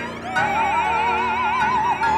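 Soprano singing a long held operatic note with wide vibrato, entering about a third of a second in, over piano and violin accompaniment.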